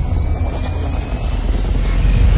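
Cinematic logo-intro sound effect: a deep, steady rumble under a hiss, with a faint rising tone.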